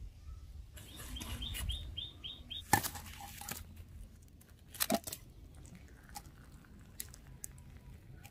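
A cleaver striking and prying at the charred husk of a coconut roasted in the embers, with two sharp cracks about three and five seconds in, the loudest sounds. Early on, a bird gives a quick run of about seven high chirps in the background.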